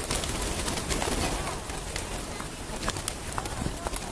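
A large flock of feral pigeons, with many wings flapping as birds take off and land, heard as a stream of sharp clicks over a noisy hiss that slowly gets quieter.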